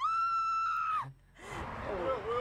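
A person's high, shrill scream held at one steady pitch for about a second, cutting off abruptly, set off by fright at a spider; talking resumes about a second and a half in.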